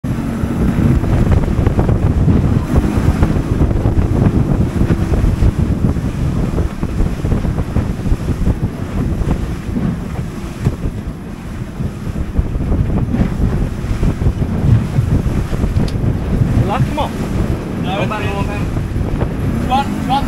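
Wind buffeting the microphone on a small motorboat under way on choppy sea, over the boat's running engine and the rush of water against the hull. Faint voices come in near the end.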